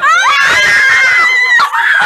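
Excited screaming: a loud, high scream that jumps up at the start and is held for about a second and a half, then breaks into shorter shrieks.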